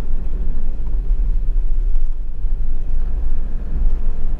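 Steady low rumble of a camper van on the move: engine and tyre noise, deep and even, with no sudden events.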